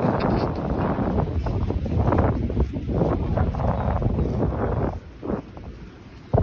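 Strong wind buffeting a phone's microphone, a gusting low rumble that eases off about five seconds in.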